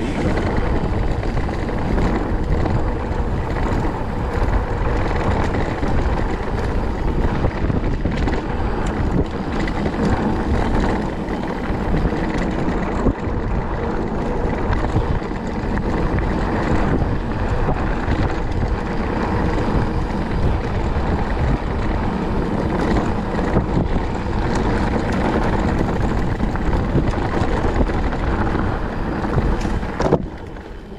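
Wind rushing over the camera microphone while a mountain bike rolls along a rutted dirt trail, its tyres and frame rattling over the ground in a steady loud noise.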